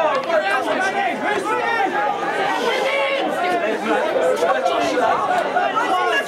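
Chatter of several people talking over one another, with overlapping voices throughout and no one voice standing out.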